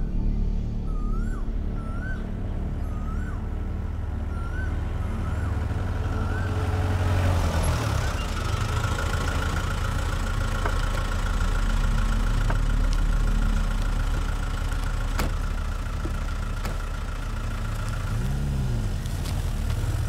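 A bird gives a short rising-falling chirp about once a second over a low rumble. From about seven seconds in, a vehicle engine and road noise build as a police jeep drives by, with a steady pulsing whine above it.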